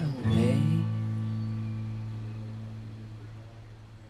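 A guitar's final chord, strummed once just after the start and left to ring, fading steadily away as the song ends.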